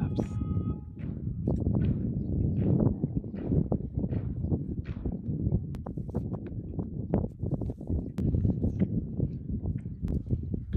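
Marching footsteps of a military honor guard: many boots striking the stone pavement in sharp, repeated stamps, over a low murmur of a waiting crowd.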